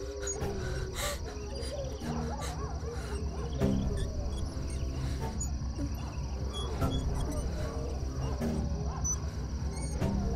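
Horror film soundtrack: a low steady drone with animal-like sound effects wavering over it and a louder hit about four seconds in.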